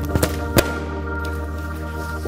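Background music with a steady bass, and about half a second in a single sharp pop: a rubber party balloon being burst with a pointed tool, after a few faint clicks of the tool against it.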